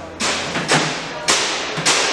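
Four sharp knocks about half a second apart as a part is fitted by hand onto a soft-serve ice cream machine's front head.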